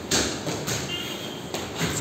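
Feet of several people landing on a wooden gym floor during side-to-side jumps: a few irregular thuds, with a brief high squeak about a second in.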